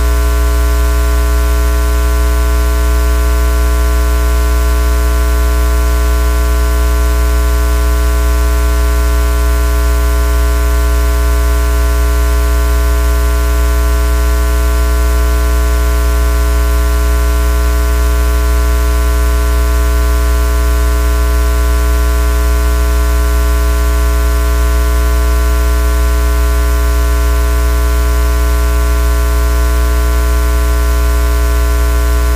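Loud, steady electrical mains hum with a buzzy stack of overtones and a layer of static hiss, unchanging, as from a fault or ground loop on an audio feed.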